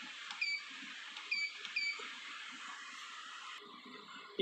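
Three short, high electronic beeps from the keypad of an Essae SI-810PR weighing scale, one about half a second in and then two close together a second later, each just after the faint click of a key press, as a PLU code is keyed in to call up a product.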